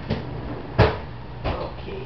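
Three knocks of objects being handled: a light one at the start, a sharp, loud one a little under a second in, and a duller one about half a second after it.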